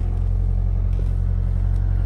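Vehicle engine running while moving slowly, heard from inside the cab: a steady low rumble.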